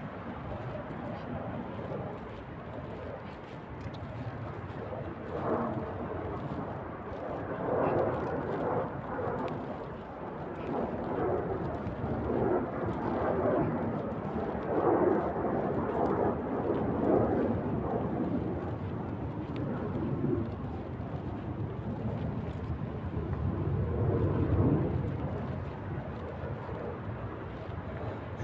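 Uneven outdoor rushing noise that swells and fades, like wind buffeting the phone microphone, with no speech.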